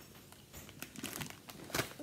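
Foil snack bag of cracker chips crinkling as it is handled, with scattered crisp crackles, and the crunch of a cracker chip being bitten.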